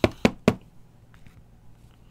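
Trading cards being laid down on the tabletop: three quick, sharp taps about a quarter second apart, all within the first half second.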